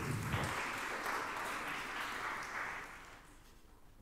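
Audience applauding: fairly quiet, even clapping that dies away about three and a half seconds in.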